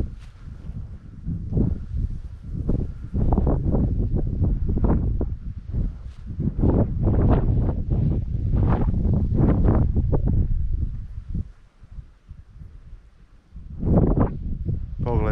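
Wind buffeting the microphone in uneven gusts, a low rumble that swells and fades repeatedly and eases off near the end.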